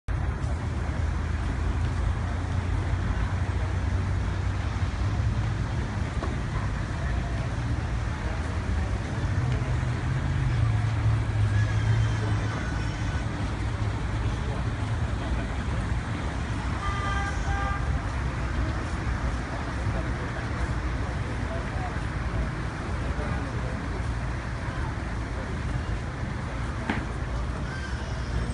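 Crowd murmur in a street over a steady low rumble of traffic and vehicle engines, which swells for a couple of seconds near the middle. About two-thirds through, a brief pitched toot like a car horn sounds.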